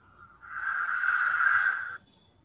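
Opening sound effect of an animated video's soundtrack: a hiss-like swell that comes in about half a second in, holds for over a second, and cuts off suddenly.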